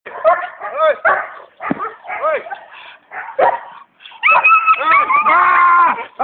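A young protection-trained dog barking in short, separate barks, about six in the first three and a half seconds. Loud, long, drawn-out voice sounds follow from about four seconds in.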